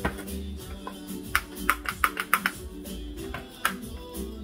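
Background music playing throughout. A cluster of sharp clicks and taps comes between about one and a half and two and a half seconds in, from a jar and its lid being handled.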